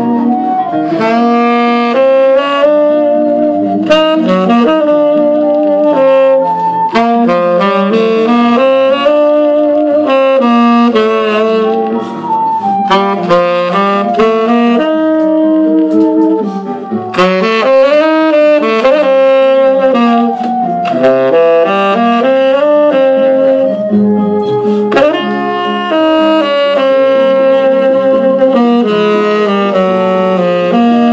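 A 1955 Conn Director 16M tenor saxophone with a JJ Babbitt Wolf Tayne mouthpiece playing a lyrical choro melody in long phrases, with short breaks for breath.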